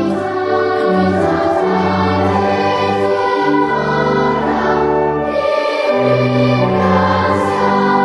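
A choir singing a hymn, long held chords changing every second or so, with a short break in the low voices about six seconds in.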